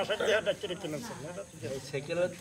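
Men's conversation at a lower level, with a faint steady high hiss underneath.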